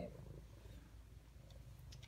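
Faint, steady low purring of a brown tabby domestic shorthair cat.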